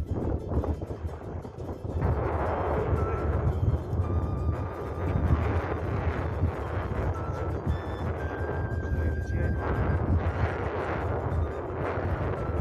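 Strong wind buffeting the microphone at high altitude, a rough, uneven rumble that grows louder about two seconds in. Faint background music runs underneath, with a few high held notes.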